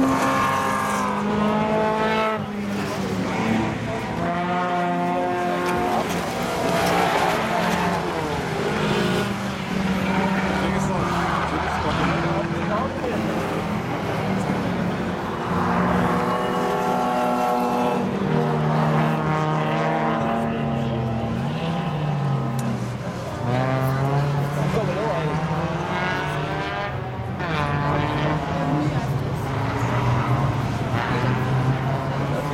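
Rallycross cars racing on the circuit, their engines revving hard and dropping back with each gear change and corner, the pitch rising and falling again and again.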